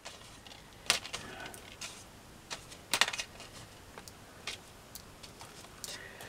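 Loose glass beads clicking lightly against one another as they are picked through by hand: faint, irregular single clicks and small clusters of clicks.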